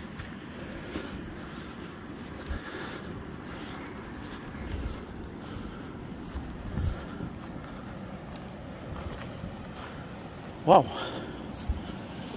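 A few soft footsteps on a muddy grass path over a steady outdoor noise.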